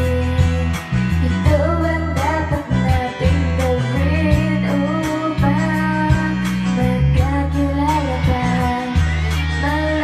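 A woman singing karaoke into a microphone over a backing track with a heavy bass line and a steady beat.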